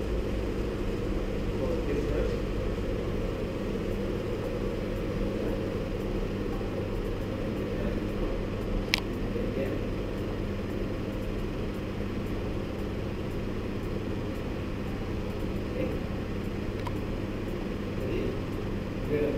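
Steady low mechanical hum and rumble of room noise, with one sharp click about halfway through.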